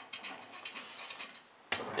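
Faint, scattered mechanical clicks from a Volvo AWD differential with a blown viscous coupling being turned by hand, then a sudden louder clunk from handling the parts near the end.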